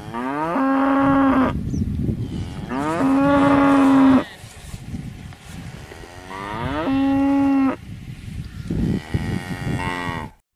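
Cows mooing: three long moos, each rising in pitch at the start and then held, a few seconds apart, with a fourth starting near the end.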